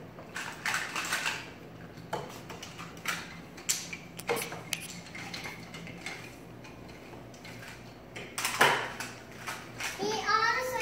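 Toy train track pieces clattering and clicking together as they are handled and connected, in irregular knocks with the loudest clatter near the end.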